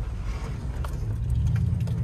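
Toyota Tundra pickup driving, heard from inside the cab: a steady low engine drone with road noise.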